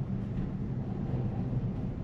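Steady low hum and road noise inside the cabin of a Tesla Model Y rolling slowly, with no engine sound.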